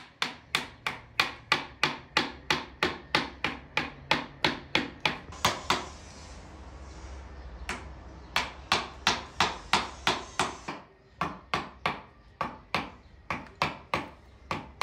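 Wooden mallet striking a carving chisel into a wooden kündekari panel: sharp, even taps about three a second, with a break of a second or two about halfway through.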